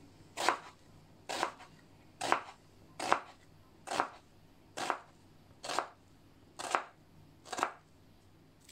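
Kitchen knife slicing a halved onion on a wooden cutting board: a steady series of short cuts, about one a second, nine in all.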